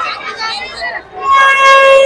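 Crowd chatter, then, a little over a second in, a loud, steady horn tone on one pitch starts suddenly and holds.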